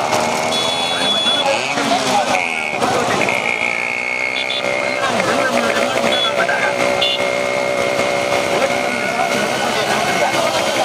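Men shouting and calling over the bullock carts of a rekla race, with a shrill steady tone joining in from about three seconds in.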